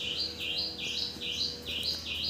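A small songbird calling over and over, a quick regular series of high two-note chirps, each stepping up in pitch, about two to three a second.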